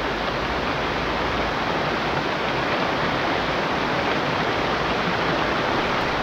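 Mountain stream rushing over a small rocky cascade: a steady, even rush of water.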